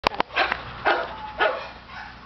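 Two sharp clicks at the very start, then a dog barks three times, about half a second apart.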